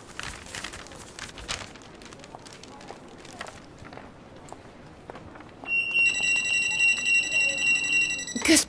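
A paper shopping bag rustling as it is handled, then, about two-thirds of the way in, a store's anti-theft security gate alarm goes off with a loud, steady, high-pitched electronic tone that warbles slightly. The alarm is set off by a garment with its security tag still on being carried out through the gate.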